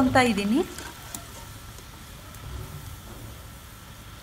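Hot oil sizzling steadily and low around cabbage Manchurian balls deep-frying in a kadai, with a light click about a second in.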